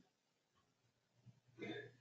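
Near silence: room tone in a small meeting room, with one brief faint vocal sound near the end.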